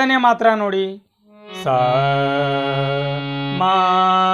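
Harmonium lesson: for the first second a voice sings quick sargam note syllables over a held harmonium reed drone. After a brief pause, the harmonium sounds a sustained reed chord, and its lower note changes about three and a half seconds in.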